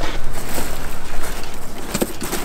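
Rustling and scraping of a cardboard box as hands rummage inside it, over a steady low rumble of wind on the microphone.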